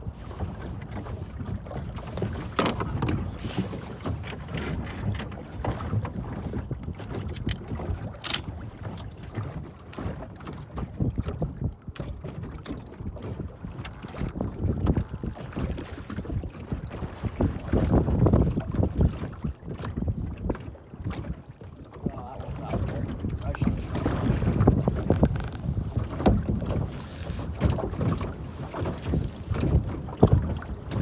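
Choppy sea water slapping and lapping against a floating layout blind's hull, with wind buffeting the microphone; the water noise swells and eases irregularly, with a couple of brief sharp knocks.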